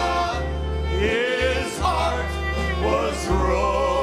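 Male vocal trio singing a gospel song in harmony, holding and bending long notes, with fiddle accompaniment over steady low bass notes.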